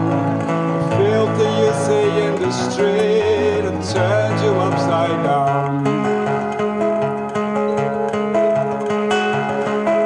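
Live music from acoustic guitar and electric keyboard in a passage without sung words, the chords turning to longer held notes about six seconds in.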